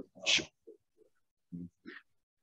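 A person's brief vocal noise with a breathy burst near the start, then a few faint short murmurs.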